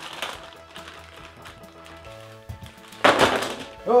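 Cardboard jigsaw puzzle pieces tipped out of a plastic bag, landing on the table in a short, loud clatter about three seconds in, over background music.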